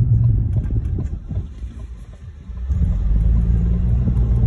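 Car driving round a roundabout, heard from inside the cabin: a low engine and road rumble that eases off for about a second and a half in the middle, then rises again.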